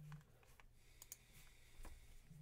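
A few faint clicks of computer keys, near the start, about a second in and near the end, over a low steady electrical hum.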